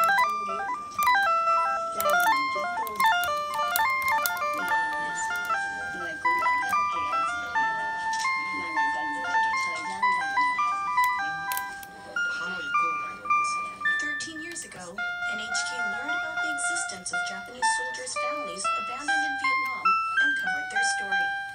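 Casio VL-1 monophonic synthesizer playing a quick improvised melody of short, stepped single notes through a Boss Katana Mini amp with delay, so each note trails off in echoes. A few held notes waver with vibrato a little past the middle. A voice talks faintly underneath.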